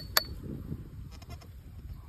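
Dry soil rustling and crumbling as a dirt-caked metal object is picked out of a dug hole and cleaned by hand, with two sharp clicks right at the start.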